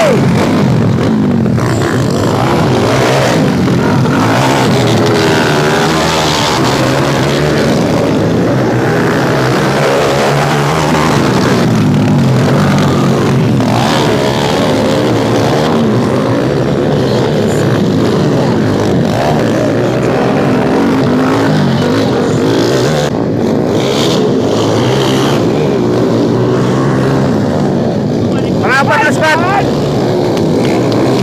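Dirt-bike engines revving and running, their pitch rising and falling repeatedly, mixed with the chatter of a large crowd.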